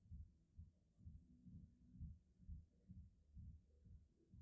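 Near silence, with a faint, low, even thudding pulse about twice a second.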